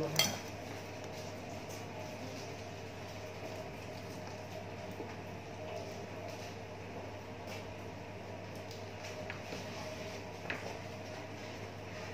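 A clear plastic blister pack holding pruning shears being handled and turned on a metal plate: a sharp click just after the start, then a few faint clinks and taps over a steady low hum.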